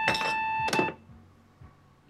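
An electronic desk intercom buzzer sounds one steady, even tone that cuts off just under a second in. A couple of brief clattering noises overlap it as a cup is set down on its saucer.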